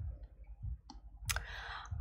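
Two clicks about half a second apart, the second sharper, followed by a short breath in just before speech resumes.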